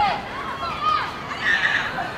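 High-pitched children's voices shouting and calling out, several short overlapping calls during a youth field hockey match.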